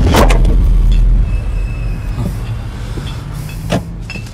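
A car engine, with a heavy low rumble in the first second settling into a steady low hum. There is a short sharp knock just after the start and another shortly before the end.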